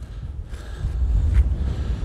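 Strong wind buffeting the microphone, a low rumble that grows stronger about half a second in.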